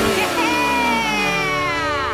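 A cartoon boy's long excited yell, starting about half a second in, sliding slowly down in pitch and dropping away at the end, over background music.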